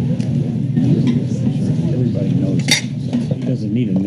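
Indistinct talking, off-microphone and not made out as words, with one sharp clink a little under three seconds in.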